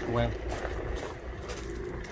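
Nissan Micra engine running steadily at idle, just started on a newly fitted battery.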